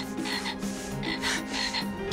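Green plush toy frog's sound box croaking in a run of short, evenly repeated croaks, over soft background music.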